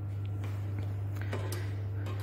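Steady low hum of the lab's room tone, with a few faint light clicks as a funnel is picked up and fitted into the top of a burette.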